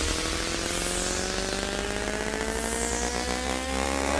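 Electronic riser effect: a held synth tone gliding slowly upward in pitch over a hiss, with whooshing sweeps about every two seconds, building toward a transition.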